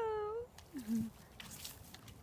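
A dog whining: a long high whine at the start, then a shorter, lower whine that drops in pitch about a second in.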